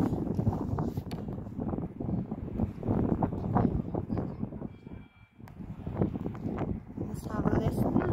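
Strong wind buffeting the phone's microphone in loud, uneven gusts, dropping away briefly about five seconds in.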